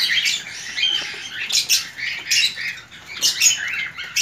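Caged birds chirping and chattering: a busy, unbroken run of short, high calls.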